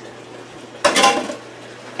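A single short clatter of kitchenware about a second in.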